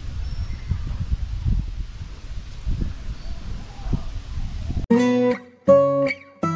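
Low, gusty rumble of wind on the microphone. About five seconds in it gives way abruptly to acoustic guitar music, with separate strummed chords.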